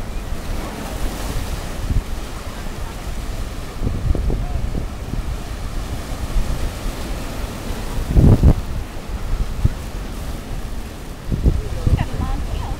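Shallow surf washing around rocks, with wind rumbling on the microphone in gusts, the strongest about eight seconds in.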